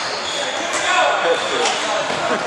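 Live sound of a basketball game in a gymnasium: a basketball bouncing on the hardwood court, with short high sneaker squeaks and players' and spectators' voices echoing in the hall.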